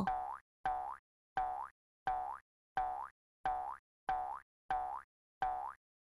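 Cartoon sound effect: a short tone that sweeps upward in pitch, repeated in an even loop about every 0.7 s, nine times.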